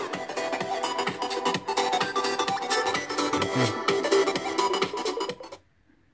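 Electronic dance music playing from a small 3D-printed speaker box with two tiny 3-watt full-range drivers, with a steady beat. It cuts off suddenly about five and a half seconds in.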